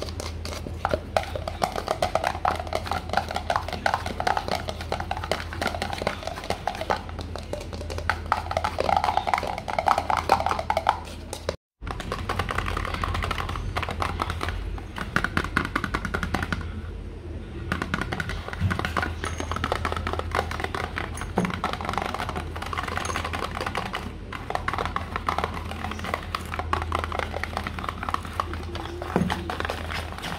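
Rapid fingertip and fingernail tapping on a hard green plastic container, giving a hollow tone. After a sudden brief dropout a little before halfway, the tapping moves to a cardboard box and sounds lighter and drier.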